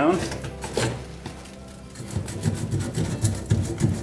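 Abrasive open-mesh cloth scrubbing the end of a black ABS plastic drain pipe, a rhythmic rubbing of about three strokes a second that resumes after a brief lull.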